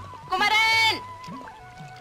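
A woman's loud, wavering vocal cry lasting about half a second, over film background music with a steady beat.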